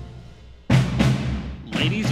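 A military brass band's held chord dies away, then a sudden loud drum strike comes about two-thirds of a second in, with a second hit a moment later.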